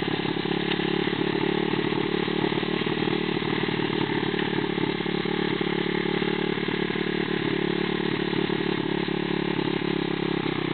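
Motorcycle engine running steadily, with no revving up or down.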